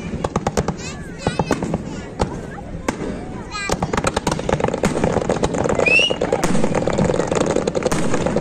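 Fireworks display: rapid bangs and crackles from many shells and ground fountains going off, thickening into a dense, continuous crackle about halfway through.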